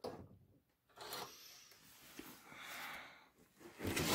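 Faint handling and rubbing noises in two short stretches, one after about a second and one near three seconds, with near silence between and around them.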